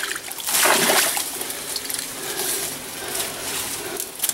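Shallow ditch water splashing and sloshing as a scoop net and hands are worked through it, with a louder splash about half a second in.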